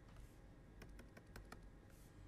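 Near silence, broken by a quick run of faint taps as a pen stylus dots a row of points onto a tablet's writing surface.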